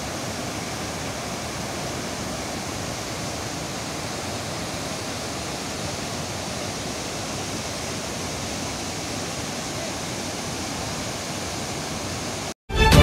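Bogatha waterfall in flood after heavy rains, a steady, even rush of water pouring over the rock ledge.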